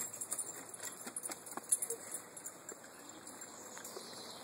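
A dog's collar tags jingling faintly in scattered light clicks as the dog runs, over a quiet outdoor background hiss.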